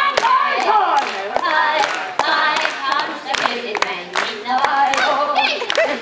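Voices singing with a steady clap-along of hand claps, some of them loud and close, roughly two claps a second.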